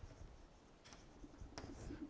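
Chalk writing on a blackboard: faint short scratches and taps, a few strokes about a second in and near the end.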